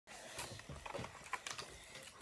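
Faint, irregular clicks, bumps and rustles of a phone or camera being handled close to its microphone as it is set up.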